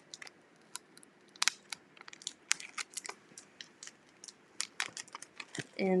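Clear vinyl transfer tape being peeled off an adhesive vinyl decal on a glitter Christmas ornament, giving irregular sharp crackles and clicks.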